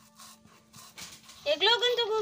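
Faint scraping of a hand stone being rubbed over a flat grinding stone, then about one and a half seconds in a loud, high-pitched vocal sound starts.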